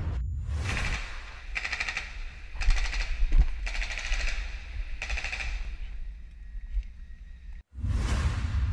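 Automatic gunfire in several rapid bursts, loudest a little before halfway through, then fading to a quieter stretch before cutting off suddenly near the end.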